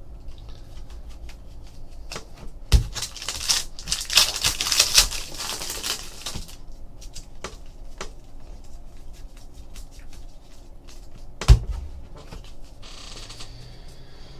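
Trading cards handled and flipped through by hand: a few seconds of cards sliding against one another, with small ticks throughout and two sharp knocks on the table.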